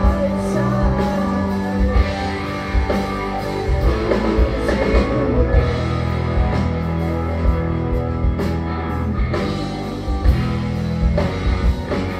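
Psychedelic progressive rock band playing live on a concert PA: electric guitars, keyboards, bass and drum kit, with held chords over steady drum hits.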